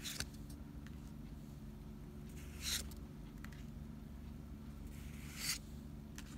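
Pokémon trading cards being slid one at a time off a stack in the hand: three short papery swishes, at the start, near the middle and near the end, over a steady low background hum.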